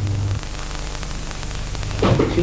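Steady hiss with faint crackle, the background noise of an old videotape recording; a low hum left over from the song stops abruptly about half a second in.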